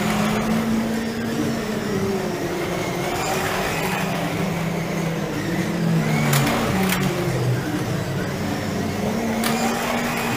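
Electric motors of 1/24-scale slot cars whining as they lap the track, their pitch rising and falling as the cars speed up and slow down, with a few sharp clicks.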